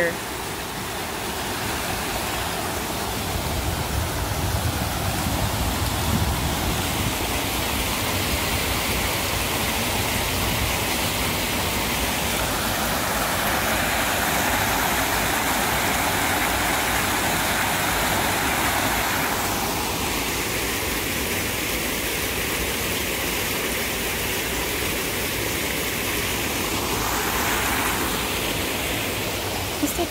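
Creek water running high and rushing over a low concrete spillway, tumbling as white water into the pool below: a steady, unbroken rush.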